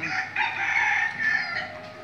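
A rooster crowing once, a single long call of about a second that fades near the end.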